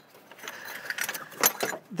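Scrap metal car parts clinking as they are handled in a dumpster: a few light metallic clicks and knocks, most of them in the second half.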